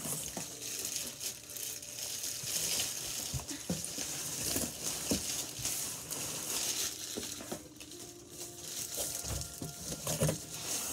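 Plastic wrapping crinkling and rustling against cardboard as a folded gymnastics mat is pulled out of its box, with a few soft knocks.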